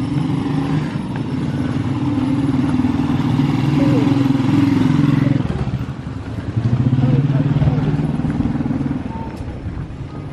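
Motorcycle engine running close by. It grows louder up to about five seconds in, drops briefly, then is loud again until it fades about nine seconds in.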